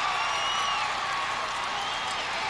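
Football stadium crowd cheering just after the game-winning field goal: a steady wash of crowd noise with a few high whistle-like cries above it.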